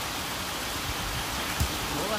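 Steady hissing background noise, with a single short knock about one and a half seconds in.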